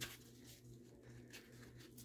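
Near silence: room tone with a faint low hum, broken by a few faint ticks of a nylon sling and its metal HK hook being handled.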